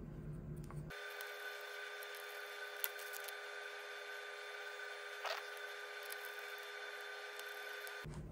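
Quiet steady electrical hum, made of several fixed high tones, with a single light click about three seconds in and a brief downward-sweeping squeak a little past five seconds. The click and squeak come from handling the cable and its small plastic plug connectors.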